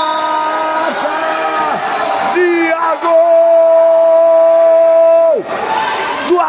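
A man's voice holding a long, drawn-out shout on one steady note: a sports commentator's extended goal cry. One breath runs out about a second in, and after short breaks a longer one is held for about two seconds before sliding down near the end.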